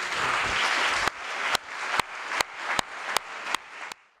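Audience applauding: a dense patter of clapping for about a second, thinning to scattered single claps about two or three a second.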